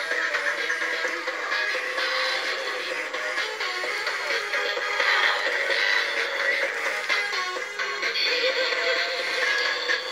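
Electronic dance music with synthetic vocals playing from a Robosapien V2 toy robot's built-in speaker as it performs its dance routine.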